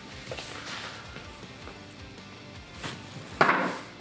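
Faint background music, then about three and a half seconds in a bean bag lands on the wooden cornhole board with one sharp thud and a short slide, the board being slippery.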